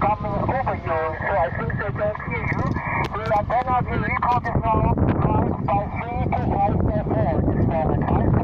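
A distant station's voice coming in on HF single sideband through the Elecraft KX2 transceiver's speaker, under a steady bed of band noise and static. It is the reply to a request for a signal report.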